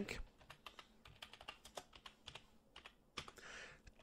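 Faint typing on a computer keyboard: a quick, uneven run of key clicks as a short name is typed into a form field.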